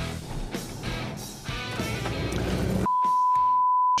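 Background rock music with guitar. About three seconds in, a single steady high beep cuts in, louder than the music, and holds for about a second: a censor bleep masking a spoken street name.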